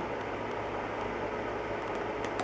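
Steady background noise in a small room: an even hiss with a faint low hum under it.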